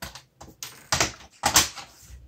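Sharp plastic clicks and clatter as an instrument cluster is pried at with a plastic tool and handled on the bench, several in quick succession, the loudest about one and a half seconds in.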